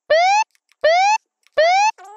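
Electronic warning sound effect: three identical short rising tones about three-quarters of a second apart, repeating like an alert.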